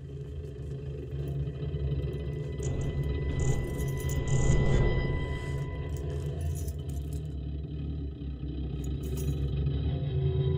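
A low rumbling drone of film score and sound design, with a faint steady high tone and scattered metallic clicks and rattles over it. It swells to a peak about halfway through, eases, then builds again near the end.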